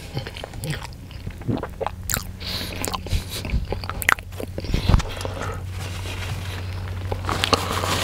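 Close-up eating sounds: a man biting and chewing food, with many irregular sharp mouth clicks over a steady low hum.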